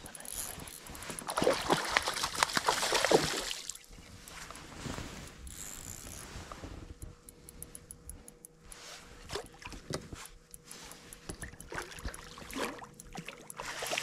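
Water splashing as a hooked rainbow trout thrashes at the surface beside a boat, loudest in a burst from about one to four seconds in, then quieter stirring water and small clicks, with a faint steady hum joining about halfway.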